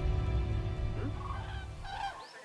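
Background music fading out while a flock of large birds flying overhead begins calling, with short pitched calls about a second in and again near the end.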